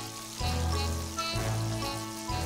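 Pieces of flour-dredged pike-perch shallow-frying in plenty of hot oil, sizzling, near the end of their frying. Background music runs under it, with a low bass note about once a second as the loudest part.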